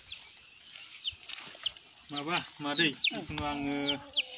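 A young chicken peeping over and over: short, high chirps that fall in pitch, one or two a second.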